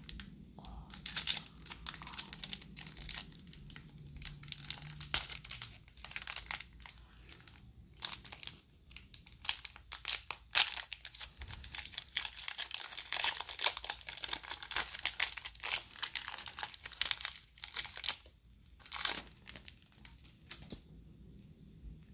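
Foil booster-pack wrapper crinkling and being torn open: a long run of irregular crackling and ripping that dies down near the end.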